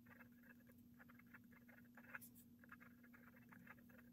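Faint scratching of a pen writing on planner paper, in quick, irregular short strokes over a low steady hum.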